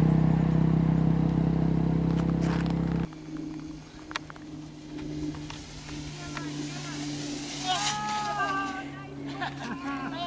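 A steady low engine hum that cuts off abruptly about three seconds in, followed by quieter outdoor sound. A little before the end there is a drawn-out vocal call.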